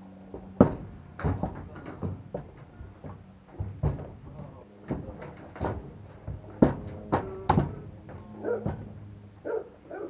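A pony's hooves clopping and thudding on a horse trailer's ramp and floor as it steps up into the trailer and back out, a loud, irregular run of knocks with a few sharp bangs. The ramp is carrying the pony's weight of about 400 kg.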